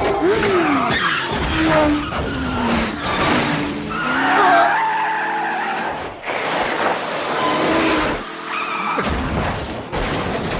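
Film crash sound effects of a highway pile-up: car tyres squeal in several long skids, their pitch sliding up and down, with sudden crashes of metal and breaking glass in between.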